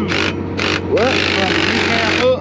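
Cordless power driver run in one burst of about a second, starting about halfway in, on a bolt of a cotton picker row unit, over a steady low engine hum.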